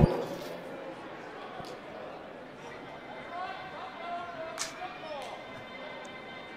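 Indistinct chatter of voices in a large basketball arena, low and steady, with a few sharp knocks.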